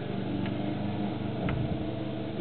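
A steady low engine hum runs throughout, with two faint clicks, about half a second and a second and a half in, as the differential's ring gear is turned with a wrench.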